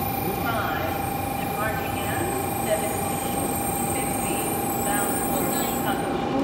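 N700-series Shinkansen train rolling slowly along the platform as it draws to a stop: a low rumble under a steady high hum, with short chirp-like sounds repeating about once a second.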